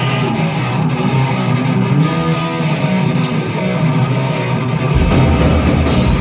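Live rock band starting a song with loud electric guitar. The bass and drums come in about five seconds in.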